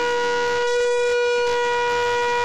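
A long spiralled shofar, the animal-horn trumpet, blown in one steady held note.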